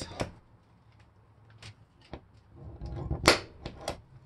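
A hand-held center punch snapping against the van's sheet-metal roof, marking centering indents for a fan hole. It makes a series of sharp clicks, the loudest about three seconds in, with a few quick ones after it.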